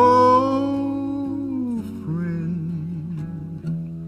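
Male voices singing a slow country ballad over strummed acoustic guitars. A long held note gives way after about two seconds to a lower, wavering hummed line.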